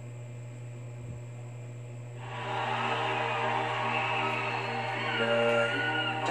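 A steady low hum for about two seconds, then music starts playing from an LED TV's built-in speakers as a concert video begins, over the same hum.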